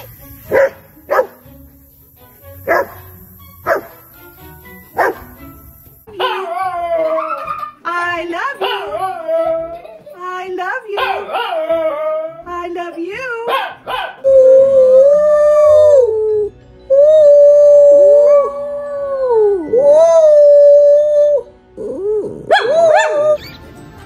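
A small Chihuahua-type dog howling: wavering, bending calls that settle into long held notes, the loudest part. It follows a handful of short sharp calls a second or so apart at the start.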